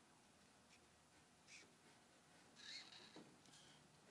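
Near silence: room tone, with a couple of faint, short squeaks of a felt-tip marker drawing on flip-chart paper, about one and a half seconds in and again near three seconds.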